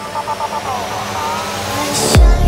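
Electronic dance music in a quieter build-up without the beat: held synth tones and gliding sweeps, with a faint rising tone high up.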